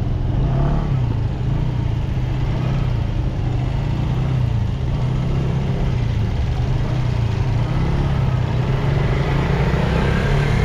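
Car engine and road noise while driving slowly in traffic: a steady low drone that rises and falls slightly in pitch.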